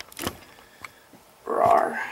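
Light clicks of Lego plastic pieces being handled as a knocked-over tree is set back up, then a short burst of rustling noise near the end.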